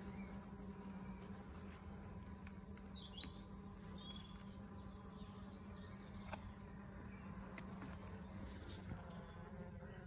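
Honeybees buzzing, a faint steady low hum that runs on evenly.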